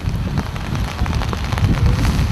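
Gusty wind buffeting the camera microphone, a low rumble that rises and falls, with rain falling and faint ticks of raindrops.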